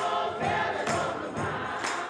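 Church congregation singing gospel music together, many voices blended, with hand clapping.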